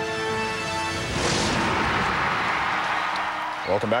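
Television sports bumper music: sustained chords, then about a second in a loud crashing hit whose noise trails off over the next two seconds. A man starts speaking just before the end.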